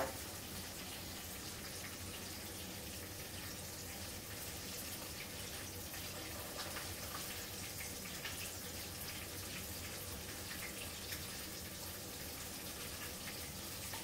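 Steady, faint background hiss of room noise, with a few faint small sounds from handling and eating a sandwich.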